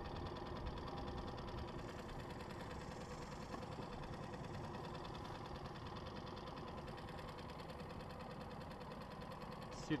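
Small tiller outboard motor on a jon boat running steadily, an even hum that holds at one level throughout.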